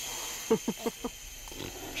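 Baby orangutan laughing: a quick run of about five short grunts, each falling in pitch, about half a second in.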